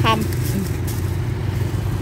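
Low, steady hum of a motor vehicle engine running close by, with a brief spoken word at the start.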